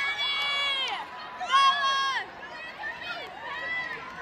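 High-pitched shrieks and yells from a group of teenagers, with two long held screams that each drop in pitch at the end, the second one the loudest, then scattered calls and chatter.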